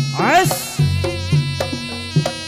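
Javanese barongan folk music played live: a buzzy reed trumpet over regular drum strokes, about three a second, with a brief rising-and-falling wail about half a second in.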